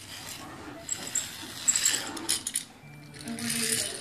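Small plastic toy clicking and clinking as its fairy figure and wings spin on the base.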